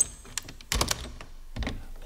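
A door being opened: a sharp click, then a quick cluster of clicks and knocks just under a second in, and a low thump near the end.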